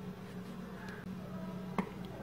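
Faint handling noise of fabric and fiberfill as a cloth doll is stuffed by hand with metal forceps, over a steady low hum, with one sharp click near the end.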